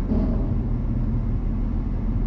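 Truck engine and road noise heard from inside the cab, a steady low rumble.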